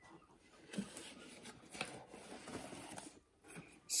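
Faint rustling and scraping of a cardboard carton being opened and a small boxed toy slid out, with a few light taps.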